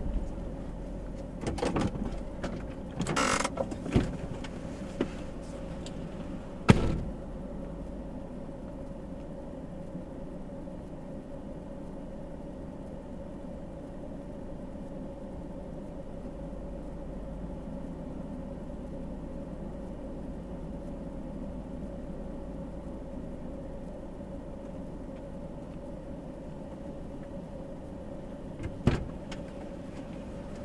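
Nissan Titan pickup's engine idling steadily, heard from inside the cab, with a few knocks and thumps in the first seven seconds, the sharpest about seven seconds in, and another knock near the end.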